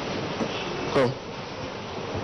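A single short exclamation, "Oh," spoken close into a handheld microphone about a second in, falling in pitch, with a brief breath pop on the mic. A steady buzzing hum runs underneath.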